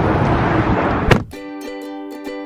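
Steady road and engine noise inside a moving car on a motorway for about a second, ended by a sharp click. Then background music of plucked strings, like a ukulele, takes over.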